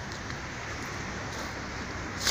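Steady, even rush of road traffic from the adjacent highway.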